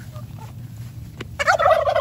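A tom turkey gobbling: one loud, rapid warbling gobble starting about one and a half seconds in. It is the sign of a male fired up and displaying.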